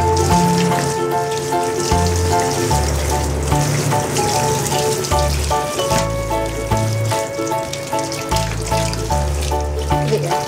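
Water spraying steadily from a handheld shower head onto a small dog's beard, over background music.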